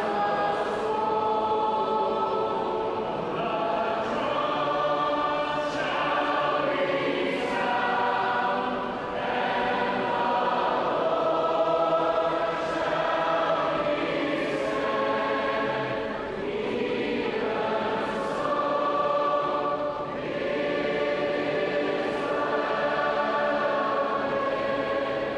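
A large crowd of young voices singing a praise song together as one big choir, long held notes moving through a slow melody.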